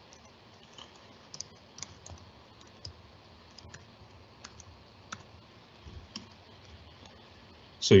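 Faint, scattered keystrokes on a computer keyboard, single clicks spaced roughly half a second to a second apart, as a command line is typed out.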